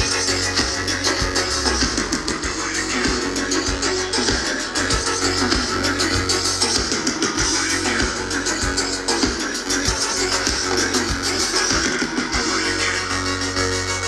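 Live electronic dance-pop band playing through a festival PA, with a steady drum beat under keyboard and synthesizer parts, heard from amid the audience.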